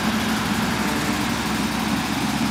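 Slavutych KZS-9-1 combine harvester's diesel engine running steadily at idle.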